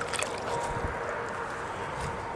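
Steady background noise with a faint, even hum running through it, and a few small ticks in the first half second.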